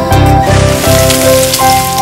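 A cooking pan hissing on the stove, a rain-like crackle of water in a hot pan, over background music with a steady beat.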